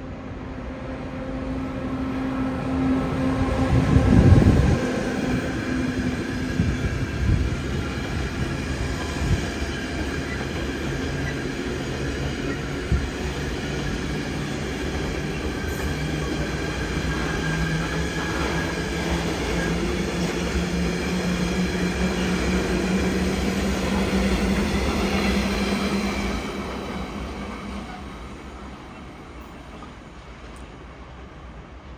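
A freight train of tank wagons hauled by a Siemens Vectron electric locomotive passes at close range. The sound builds to its loudest as the locomotive goes by about four seconds in. The wagons' wheels then roll past steadily with occasional knocks over the rail joints, and the noise fades near the end as the train draws away.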